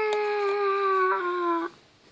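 A single long, steady, howl-like vocal note, slowly falling in pitch, that cuts off sharply near the end.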